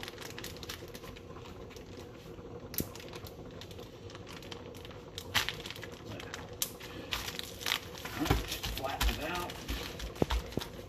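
Plastic zipper bag crinkling and rustling as gloved hands press and flatten ground meat inside it, with irregular louder handling noises about two-thirds of the way in.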